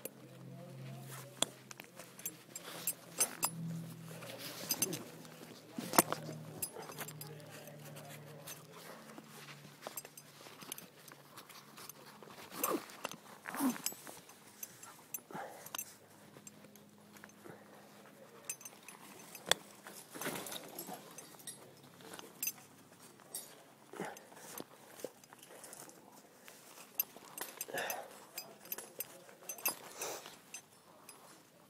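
Scattered clicks, knocks and rustles of rappelling gear close to the microphone: blue rope running through a rescue figure-eight descender, with steel carabiners shifting and clinking during a descent down a rock face.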